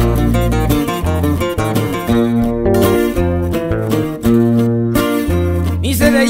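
Instrumental break of a sierreño song: acoustic guitars picking a quick melody and strumming over a deep bass line, with no singing.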